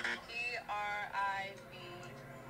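A short electronic sound effect of two held, buzzy notes about half a second apart, marking a wrong answer.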